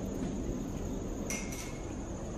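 Outdoor background noise with an even, high-pitched insect drone throughout, and a short squeak a little past midway.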